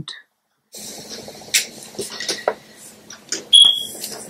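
A household alarm gives one short, high electronic beep about three and a half seconds in, over faint rustling and scattered clicks of handling.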